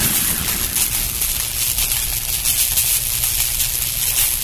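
Sustained rumble with a bright hiss over it, slowly easing down: the tail of a swooshing, impact-style sound effect from an animated intro.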